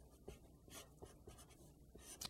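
Felt-tip marker writing numbers on paper: faint, short strokes.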